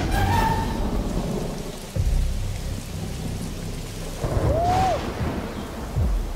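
Thunder rumbling over steady rain, with a sudden fresh roll of thunder about two seconds in and another swell about four seconds in.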